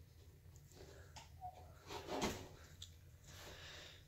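Faint steady low hum from a fluorescent light fixture's ballast while its two tubes start up and come on, with a few faint soft noises.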